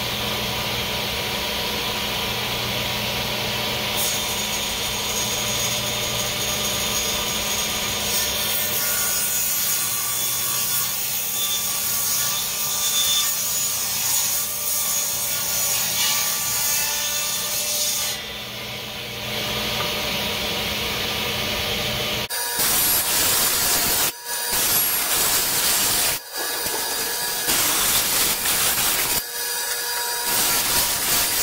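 Table saw running and ripping a board to width, the cut getting louder from about eight seconds in until about eighteen seconds. About 22 seconds in the sound changes abruptly to more sawing, broken by short gaps.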